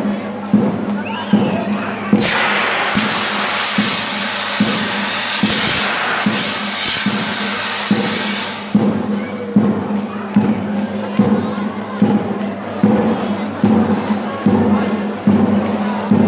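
A fire extinguisher blasts a loud, steady hiss, starting about two seconds in and cutting off suddenly about six seconds later. Under it a marching band plays with drums beating a steady march a little more than once a second, and a crowd cheers.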